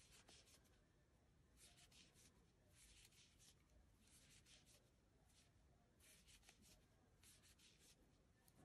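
Near silence with faint, intermittent rustling of yarn being pulled through with a crochet hook as single crochets are worked.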